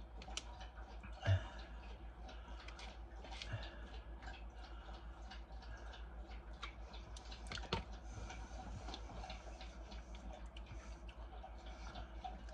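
Faint scattered clicks and light taps of someone eating from a spoon, over a low steady hum. There is one louder knock about a second in.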